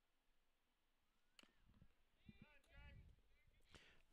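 Near silence, with faint distant voices calling out about halfway through and a faint sharp click near the end.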